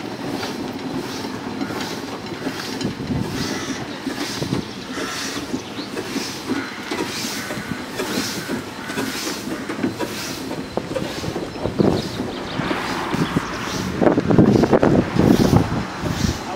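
Steam roller on the move at walking pace, its steam exhaust beating evenly about one and a half times a second over the rumble and clank of its iron rolls and gearing. It gets louder near the end.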